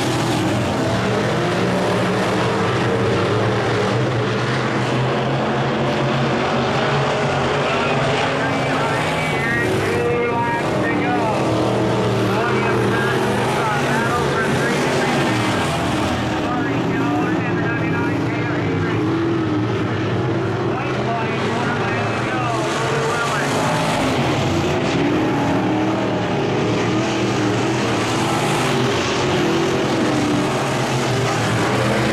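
Several sport mod dirt track race cars' V8 engines running hard around the oval. The engine note rises and falls in pitch as the cars pass and throttle through the turns.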